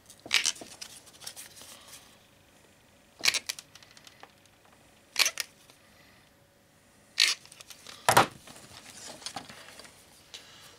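Revolving leather hole punch pliers squeezed through a thick leather strap to punch lacing holes, giving about five sharp clicks one to three seconds apart.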